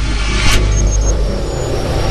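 Cinematic logo-reveal sound design: a loud, deep rumbling drone with a whoosh about half a second in.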